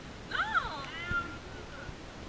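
A high-pitched, drawn-out vocal cry that rises and then falls in pitch, followed by a shorter held note that trails off at about the one-second mark.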